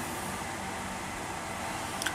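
Steady background hiss with no distinct sounds: room tone with an even noise floor.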